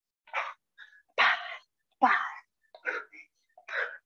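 A woman's short, breathy exhalations, about one a second, from the exertion of doing push jacks.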